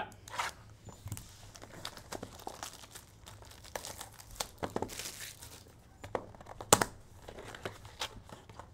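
Plastic shrink wrap being torn and crinkled off a cardboard trading-card box: a run of irregular crackles and rustles, with one sharp snap about two-thirds of the way through.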